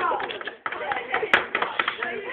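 Voices talking over one another, with scattered taps and one sharp click about one and a half seconds in.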